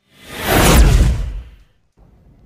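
Whoosh transition sound effect: one swell of rushing noise with a deep low rumble under it, building over about half a second and fading out by about a second and a half in.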